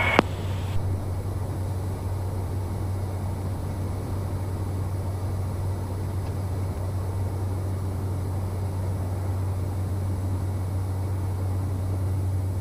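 Steady low drone of a Cessna 208 Caravan's single turboprop engine and propeller in cruise-like flight, heard from inside the cockpit as an even hum with a hiss over it.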